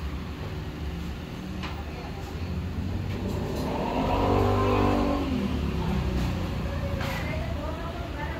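A motor vehicle engine revs or passes, its pitch rising and then falling, loudest about halfway through, over a steady low hum.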